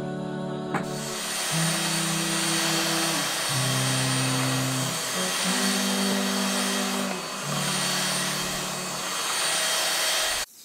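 A stick vacuum cleaner starts about a second in and runs steadily over carpet, a constant rush of suction noise with a thin high motor whine.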